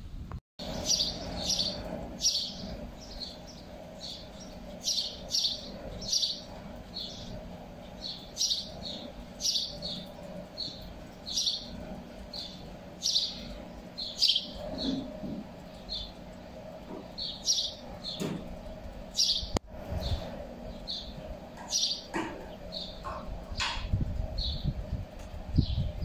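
Birds chirping: many short, high chirps in quick succession throughout, over a steady low hum.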